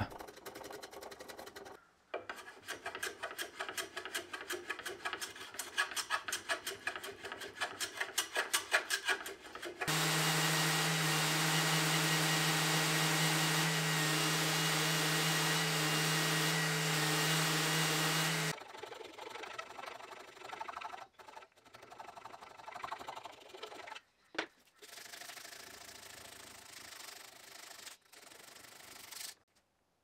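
Spokeshave shaving an ironbark stool stretcher in quick, even strokes for about ten seconds. Then a random orbital sander runs steadily for about eight seconds, followed by quieter, irregular scraping and rubbing that stops shortly before the end.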